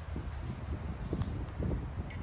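Wind buffeting the microphone, with a few faint clicks and rustles of handling.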